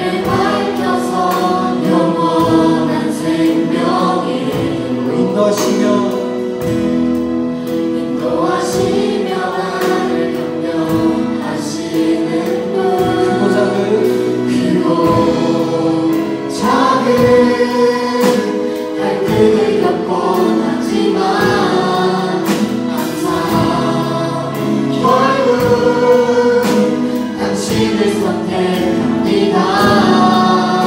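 A worship team of young male and female voices singing a Korean praise song together over instrumental backing.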